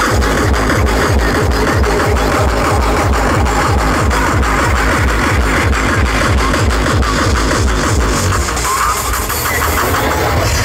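Hardcore/terror techno played loud over a festival sound system and heard from the crowd: a rapid, steady stream of heavy kick drums under a dense wash of distorted synths. The beat thins briefly near the end.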